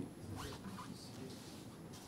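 Faint rustling and handling noises, like papers being shuffled, over quiet room tone.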